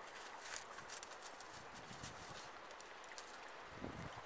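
Faint, steady rush of creek water with a scattering of light, irregular clicks and taps.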